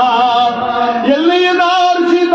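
A man chanting verse in a sermon, holding long wavering notes. About a second in, the note breaks off and a new one rises and is held.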